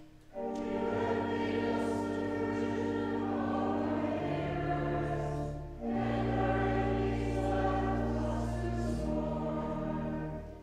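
A group of voices singing the psalm in sustained chords over steady held accompaniment, two long phrases with a short breath between them about six seconds in.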